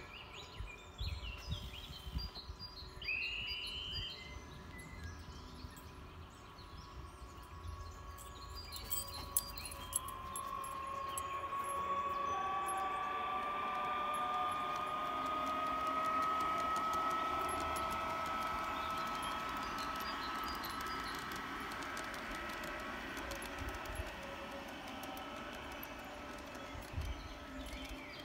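Garden-railway model of the Allegra electric train running on the track: an electric motor and gear whine that rises slowly in pitch over a hiss of wheels on rail, growing louder toward the middle and easing off near the end. Birds chirp briefly in the first few seconds.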